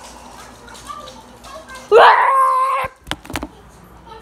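A child's high-pitched scream of about a second, rising at the start and then held on one note. A few sharp knocks follow right after.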